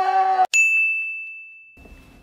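A long held shout of 'yeee' from the cheering men cuts off about half a second in. A single bright ding follows at once: one clear bell-like tone that rings out and fades over about two seconds.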